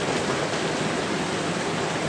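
Heavy rain pouring down, a steady, even hiss.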